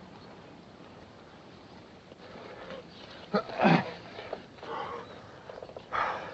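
A man groaning as he is hauled up off the ground, one loud groan about three and a half seconds in with a few fainter sounds after it, over the low hiss of an old film soundtrack.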